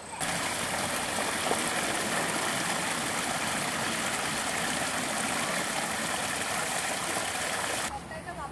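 Small garden waterfall: a steady rush of water spilling over stacked stone steps into a pool. It starts and stops abruptly.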